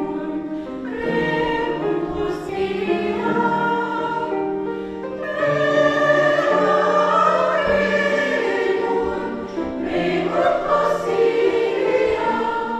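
A women's choir singing, in long held phrases with short breaks between them.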